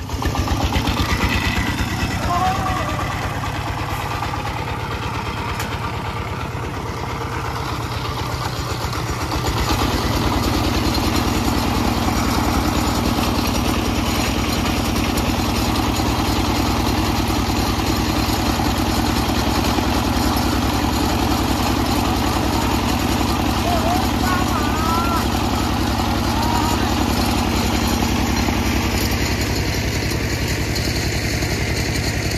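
Single-cylinder diesel engine of a công nông farm truck running with a fast, even chug. It grows louder about ten seconds in and stays steady after that.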